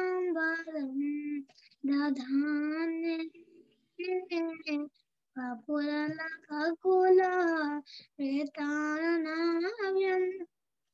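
A child's voice singing a devotional chant solo, in long held melodic phrases broken by short pauses for breath.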